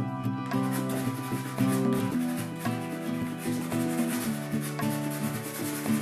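Chalk pastel stick rubbing across paper in quick repeated strokes, over background music with sustained notes.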